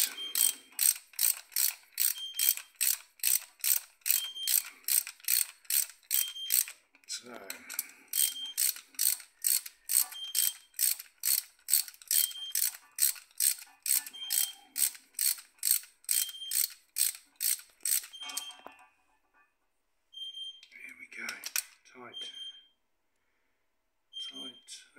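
Hand socket ratchet clicking in a steady rhythm, about two clicks a second, as the bolts on the timing chain tensioner are tightened. The clicking stops about three-quarters of the way through, then comes back as a short burst near the end. Through it a cooker beeps briefly about every two seconds.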